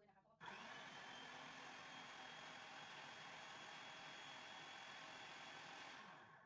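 Food processor motor running steadily, blending a cheesecake filling. It starts about half a second in as a quiet, even whir with a thin high whine.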